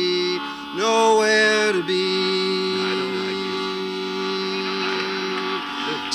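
Harmonium playing a steady reed drone under chanted song, with a man's voice singing a short held phrase about a second in.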